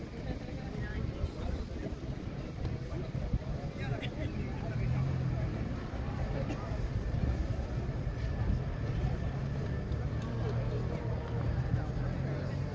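Crowd hubbub: many people talking indistinctly, with a low steady rumble underneath that grows stronger about five seconds in.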